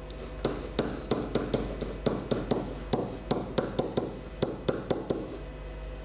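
Marker writing capital letters on a whiteboard: an uneven run of quick taps and short strokes as each letter is drawn, stopping shortly before the end.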